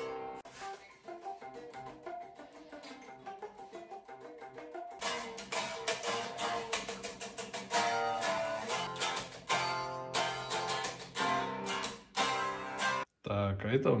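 Black single-cutaway electric guitar being picked through riffs and chords. The playing stops briefly about a second before the end, then comes back for one short final phrase.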